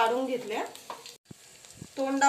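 Green chillies frying in a little oil in a pan, a faint sizzle with a couple of light clicks from the chillies being moved, after a voice briefly at the start.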